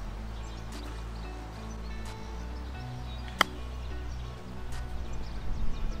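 Background music with sustained tones, broken once, about halfway through, by a single sharp click: a pitching wedge striking a golf ball on a short pitch shot.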